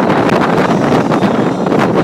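Loud, steady wind buffeting the microphone on a pontoon boat under way at speed, with the rush of the boat's motor and water blended in beneath it.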